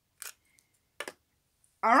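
Two short handling clicks from the camera and its charger cable, about a second apart, then a voice starts saying 'all right' at the very end.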